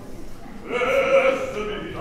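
An opera singer's voice, declaimed more than sung: one wavering phrase starts about two-thirds of a second in, with little orchestra beneath it.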